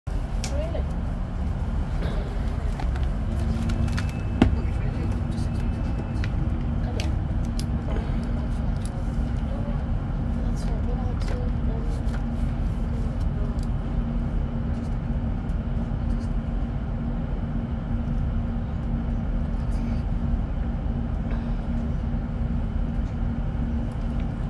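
Underfloor Cummins diesel engine of a Class 156 Super Sprinter idling while the unit stands at the platform, heard inside the passenger saloon as a steady low drone with a steady hum. A single sharp knock about four seconds in.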